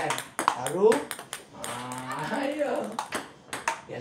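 Table tennis ball being hit back and forth between two bats and bouncing on the table: a run of sharp clicks, several a second. A voice calls out between the hits.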